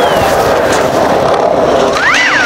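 Skateboard wheels rolling over tiled paving, a loud steady rumble.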